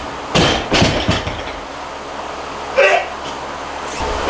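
A 150 kg barbell loaded with rubber bumper plates bouncing and rattling to rest on the floor after being dropped from an overhead snatch, several clanks in the first second and a half. A short vocal sound from the lifter about three seconds in.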